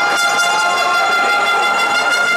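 A loud, steady horn-like tone held at one pitch, starting suddenly and sustained throughout.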